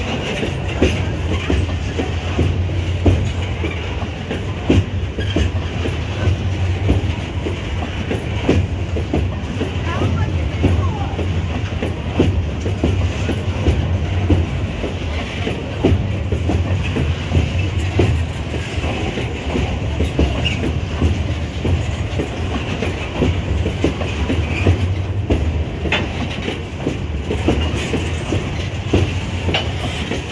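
Empty iron-ore gondola wagons of a freight train rolling past close by: a steady low rumble of steel wheels on rail, with a constant irregular run of clicks and clanks from the wheels and running gear.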